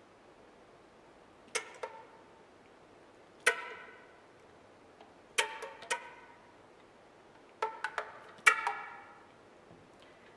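Concert flute playing short, separate notes in small groups with pauses between. Each note starts with a sharp percussive attack from key clicks and pizzicato tonguing, then rings briefly and dies away. There are about ten notes in all.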